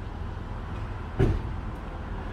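Steady low rumble of street background outdoors, with a single short thump a little over a second in.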